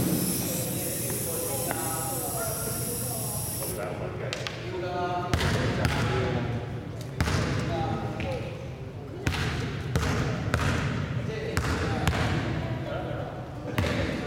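Basketballs bouncing on a hardwood gym floor at an irregular pace, sharp single thuds echoing in a large sports hall, with voices talking in the background.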